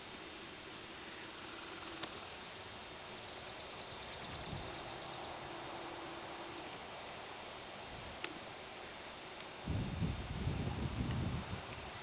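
Summer insects in open country: a high, steady buzz about a second in, then a fast, evenly pulsing high trill lasting a couple of seconds. Near the end an irregular low rumble comes in.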